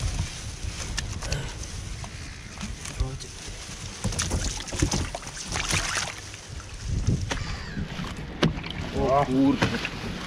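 Wind rumbling on the microphone, with scattered knocks and rustling as pike are handled in a mesh landing net on the wooden deck of a fish-holding boat. A man's voice comes in near the end.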